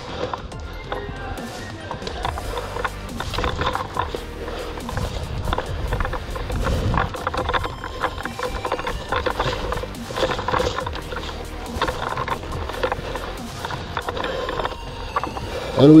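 Background music, with scattered small ticks of footsteps and movement over dry forest floor.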